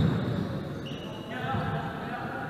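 A basketball being dribbled on a wooden gym court, with repeated bounces, amid players' calls.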